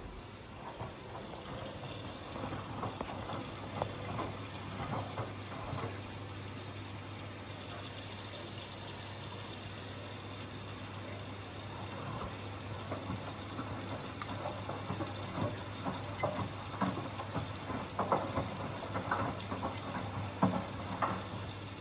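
Miele Professional PW 6065 Vario commercial washing machine taking in water at the start of its first rinse: water jets into the drum over the laundry against a steady low hum. The splashing grows louder and more uneven in the second half as the drum turns the wet laundry.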